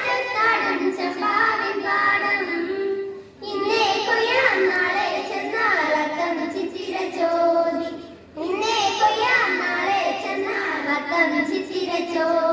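A group of children singing together, in sung phrases broken by short pauses about three and eight seconds in.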